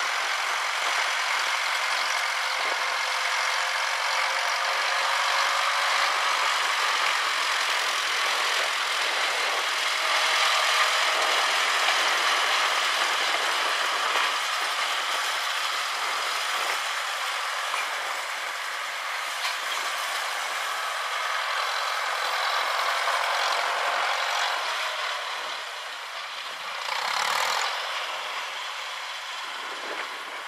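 Farmall tractor engine running steadily as the tractor drives along, growing quieter in the last few seconds. A brief louder noise comes near the end.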